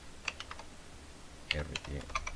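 A quick run of computer keyboard keystrokes, several sharp clicks close together a fraction of a second in.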